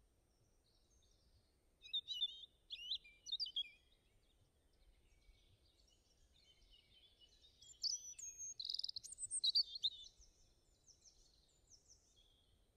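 Small songbirds chirping and singing in short bursts of quick, high chirps: a cluster about two seconds in, and a longer, louder run from about eight to ten seconds in, with a few faint chirps near the end.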